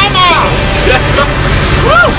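Steady low engine drone heard from inside a vehicle cab, with a young man's voice calling out and laughing over it, loudest in a rising-and-falling whoop near the end.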